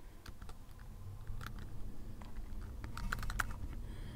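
Computer keyboard typing: faint, irregular keystroke clicks, with a quicker run of keys about three seconds in.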